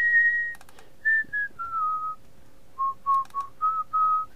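A person whistling a short, idle tune of clean held notes, starting on a long high note and stepping down to lower ones, with a few computer mouse clicks in between.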